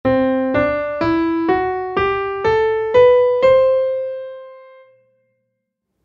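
Piano playing an ascending C Lydian scale, C D E F♯ G A B C from middle C up an octave, as eight single notes about half a second apart. The raised fourth, F♯, takes the place of F. The top C rings on and fades away.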